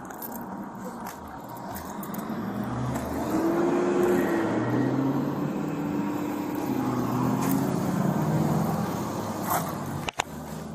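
A motor vehicle's engine running nearby. It grows louder about three seconds in and stays loud, its pitch rising and falling slightly.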